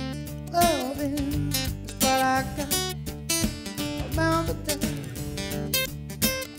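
Steel-string acoustic guitar strummed in a steady rhythm, playing the chords of a reggae-rock song.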